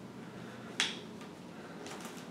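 A single short, sharp paper snap a little under a second in, from the pages of a paperback field guide being handled, over quiet room tone.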